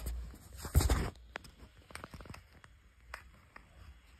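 Handling noise as plush toys and the phone are moved: one louder rub just before a second in, then soft scattered rustles and clicks.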